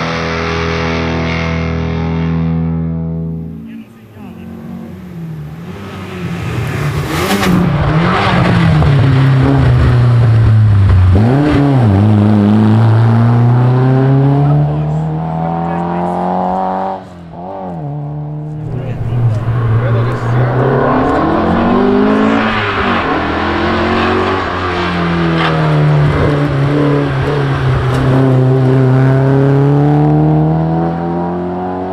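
Background music for the first few seconds, then a classic Alfa Romeo Giulia saloon rally car's four-cylinder engine revving hard through the gears on a climbing stage. The pitch rises under acceleration and falls at each shift and lift for the bends, with a brief break near the middle.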